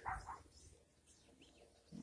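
A short dog whine right at the start, then faint outdoor quiet.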